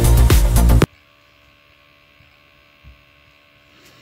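A loud burst of electronic dance music that cuts off abruptly under a second in, followed by a low, steady electrical hum with a faint bump about three seconds in.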